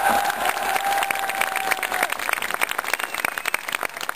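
Football supporters' crowd clapping, many sharp claps throughout, with one long held shout from a voice over it for the first two seconds.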